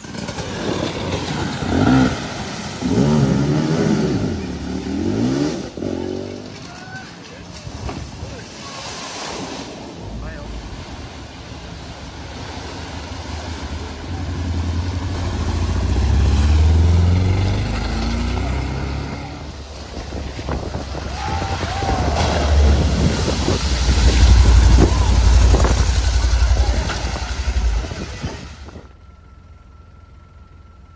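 Cars driving through a flooded ford: water rushing and splashing off the wheels and body over the low running of the engines. It grows louder as a small hatchback passes close through the water around the middle, and peaks again later.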